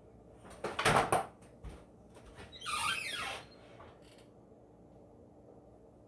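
Stainless French-door refrigerator being shut: a loud knock and clatter about a second in, then a squeak that falls in pitch about three seconds in.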